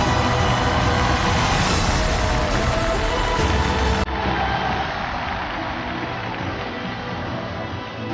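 Loud instrumental music accompanying a stage act. About halfway through it changes abruptly at an edit, turning duller and a little quieter.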